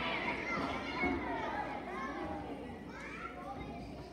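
A crowd of young children's voices talking and calling out over one another, loudest at first and gradually dying down.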